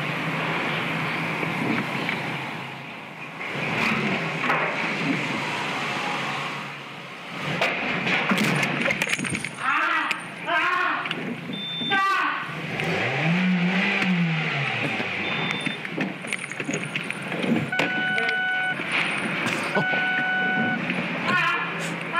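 Soundtrack of a video clip playing back: a car and people's voices. A cry rises and falls in pitch in the middle, and two short electronic beeps sound near the end.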